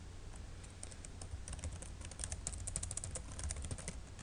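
Computer keyboard typing: a quick, uneven run of light key clicks as a line of code is typed.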